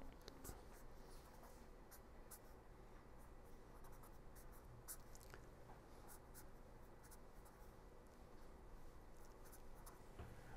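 Faint scratching of a pen writing on paper, in short irregular strokes.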